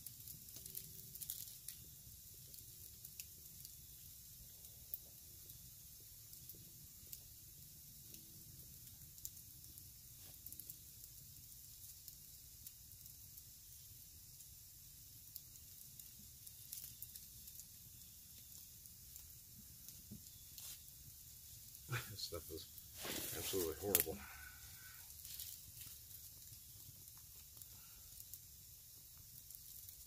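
Quiet hand work on a camp chair: faint rustles and small ticks as paracord is pulled and tied onto the stick frame, with a louder burst of rustling and handling about two-thirds of the way through.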